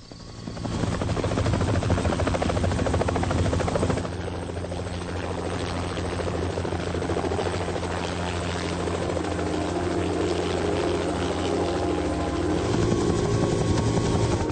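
Helicopter running, its rotor beating fast and evenly over a steady low engine drone. It swells up within the first second and holds steady, dropping slightly after about four seconds.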